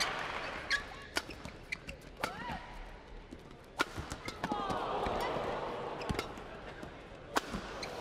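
Badminton play: sharp racket-on-shuttlecock hits every second or so, the loudest near the middle and near the end, with short squeaks of shoes on the court mat.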